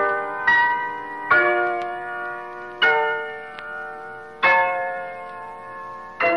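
Piano playing quarter-tone music: four slow chords struck in turn, each left to ring and die away, with the gaps between them lengthening. The quarter-tone tuning gives the chords a bell-like ring.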